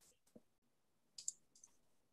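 Near silence with a few faint, short clicks, the loudest a little after a second in.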